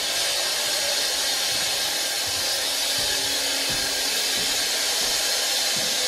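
A steady rushing hiss, like air blown by a fan or heater, holding an even level throughout.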